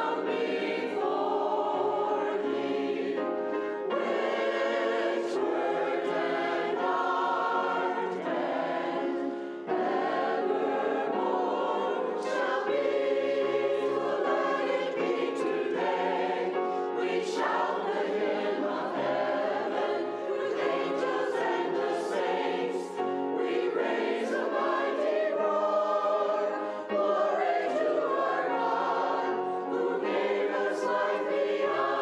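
Church choir of men and women singing an anthem in parts, with grand piano accompaniment; the singing runs on in continuous phrases with brief breaths between them.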